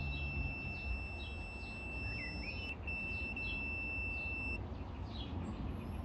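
Auto-ranging multimeter's continuity buzzer giving a steady high beep as its probes bridge a pin of the shock absorber's connector to the shock body, showing the two are connected. The beep drops out briefly near the middle, sounds again, then stops about three quarters of the way through.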